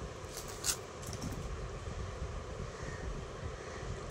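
Steady low background rumble with a few faint soft rustles, as of hands handling a folded chiffon shawl.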